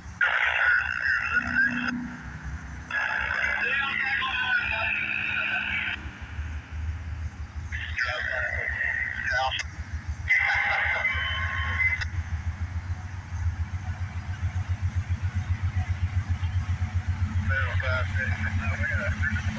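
Diesel freight locomotive's horn sounded in four blasts, the second the longest, over the low rumble of the approaching train. From about two-thirds of the way in the rumble becomes a steady pulsing that grows louder as the locomotives near.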